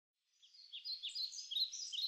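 Birds chirping: many short, quick calls overlapping in a busy chorus, fading in about a third of a second in.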